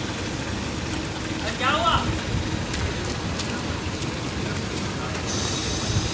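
Steady low background rumble, with one short shouted call from a man's voice about a second and a half in.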